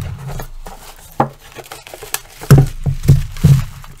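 Plastic wrapping crinkling as wrapped diecast models are lifted out of a metal biscuit tin, with a series of knocks from the tin being handled, the loudest a little past halfway through.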